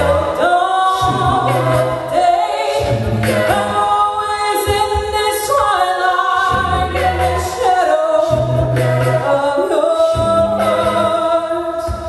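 Mixed-voice a cappella group singing live, layering held chords over a low bass part that comes and goes in phrases.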